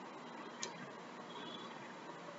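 Low steady room-tone hiss with faint ticks and one sharper click about half a second in.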